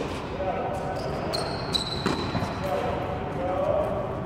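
Tennis balls being struck with rackets and bouncing on an indoor hard court: a few short sharp hits, the clearest about two seconds in, with voices in the background.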